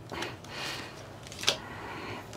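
Playing cards being handled with a faint rustle, and one sharp snap about one and a half seconds in as a card is laid on the pile on the table.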